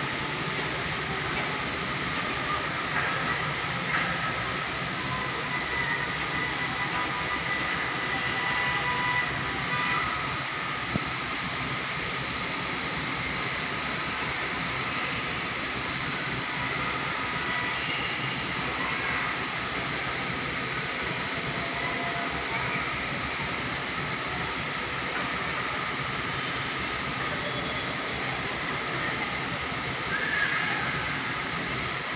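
Steady outdoor ambient noise: an even, unbroken wash with no distinct events.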